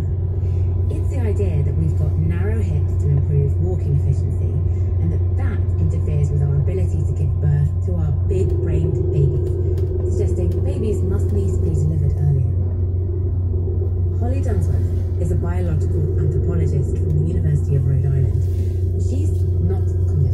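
Car driving at a steady speed, a constant low rumble of engine and road noise. A person's voice talks over it throughout.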